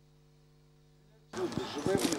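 Near silence with a faint steady hum for just over a second. Then outdoor sound cuts in abruptly, with a man beginning to speak and a few sharp knocks.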